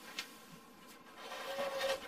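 Faint handling noise at a workbench: a light click about a fifth of a second in, then soft rubbing and rustling as a tool is picked up.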